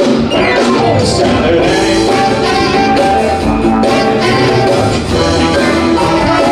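Live band music: drum kit and electric guitars playing a loud, continuous groove.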